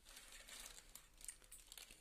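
Faint crinkling of a plastic snack packet being shaken out, with light ticks of puffed fryums dropping onto a steel plate.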